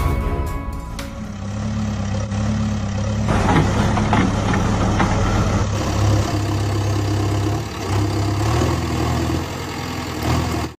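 A diesel engine running steadily with a low hum, changing in level a few times, the engine sound of a tractor or truck. A musical tune fades out within the first second.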